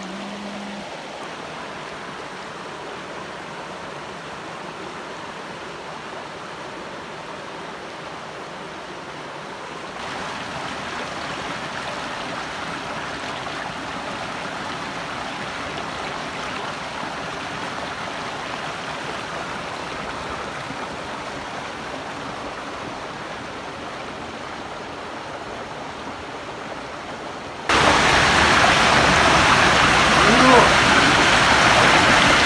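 Shallow rocky stream rushing over stones in a steady wash of water noise. It steps up a little about a third of the way in and jumps much louder near the end.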